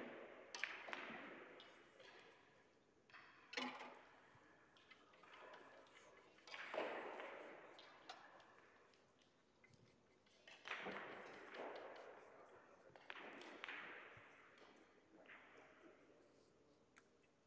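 Russian pyramid billiard balls knocking together, a handful of faint sharp clicks spaced a few seconds apart, each trailing off in a long echo of a large hall.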